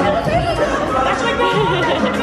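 People's voices chattering, with faint music underneath.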